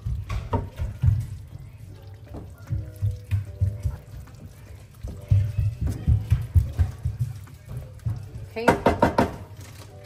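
A wooden spoon stirring cheese tortellini through a thick, creamy tomato sauce in a nonstick pan, making irregular wet stirring sounds, over background music.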